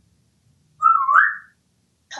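African grey parrot giving one short whistle about a second in, held level and then rising in pitch at the end.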